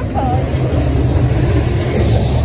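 BNSF double-stack intermodal freight train's well cars rolling past: a loud, steady low rumble of steel wheels on the rails. A brief voice is heard just at the start.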